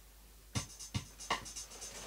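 Quiet, sharp clicks and taps about every 0.4 s, starting half a second in, with faint fast ticking between them: the rhythmic opening beats of a song.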